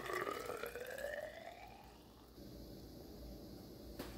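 Fizzy fermented ginger ale being poured into a tall, narrow glass hydrometer test cylinder. The filling note rises steadily in pitch over about two seconds as the cylinder fills, then the pour stops.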